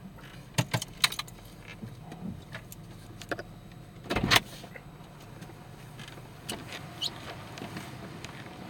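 Car cabin sounds: the engine running with a low steady hum, a few sharp clicks and knocks in the first second or so, and a louder thump about four seconds in.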